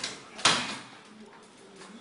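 A single sharp knock about half a second in, dying away within a fraction of a second.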